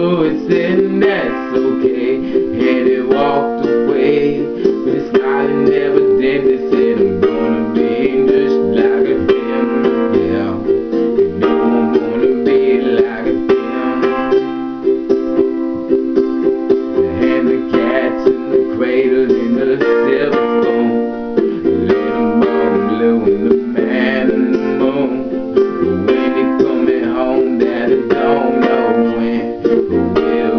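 A 6-string tenor ukulele strummed steadily in chords, with a man singing along.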